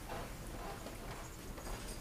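Faint room noise with a steady low hum, no distinct events.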